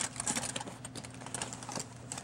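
A linen towel flatware roll being rolled up by hand on a countertop: soft fabric rustling with many light, irregular clicks as the metal flatware inside shifts and knocks together.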